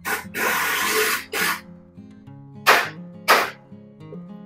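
Background acoustic guitar music, cut by five loud bursts of hissing noise: a long one of about a second near the start and two short, sharp ones near the end.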